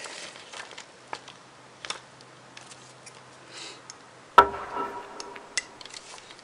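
Thin plastic transparency film crinkling and clicking as a freshly cut stencil is handled and lifted. About four and a half seconds in comes a single sharp knock with a brief ringing after it, the loudest sound here.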